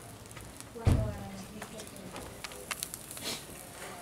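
Quesadillas cooking on a smoking comal over a fire: faint, scattered crackles and small pops. A brief voice sounds about a second in.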